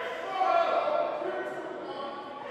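A person's voice with long, held notes.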